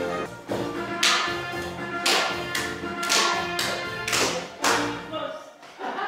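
Dance music playing in a hall, with a run of loud, sharp hits in time with it, about two a second. The music stops about five seconds in.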